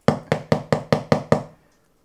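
A quick run of about eight knocks, roughly five a second, that stops about a second and a half in.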